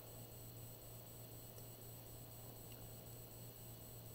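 Near silence: room tone with a steady low hum and faint hiss.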